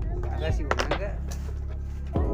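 Indistinct speech, too unclear to make out, over a steady low hum, with a few short clicks in the first half.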